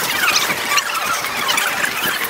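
Birds giving repeated short, high-pitched squealing calls, several a second.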